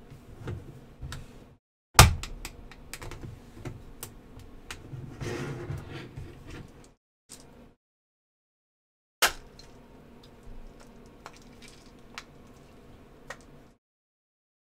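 Hard 3D-printed plastic parts handled and pressed together: scattered clicks, taps and rubbing, with a sharp knock about two seconds in and another about nine seconds in.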